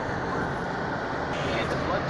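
Steady road and engine noise of a car driving slowly, heard from inside the cabin.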